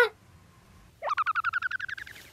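Cartoon-style editing sound effects. A short springy boing sounds at the very start. About a second later comes a rapid warbling trill that climbs slowly in pitch for about a second.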